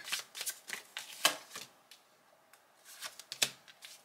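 A deck of tarot cards being shuffled by hand, drawing a clarifier card: a quick run of papery flicks for about a second and a half, a short pause, then a few more flicks later on.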